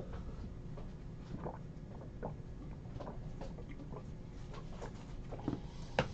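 A person drinking water in quiet sips, with a few faint, soft swallows spread through a low background.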